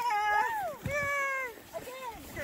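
A woman's voice making two long, high-pitched wordless cries, each drawn out and falling in pitch at its end.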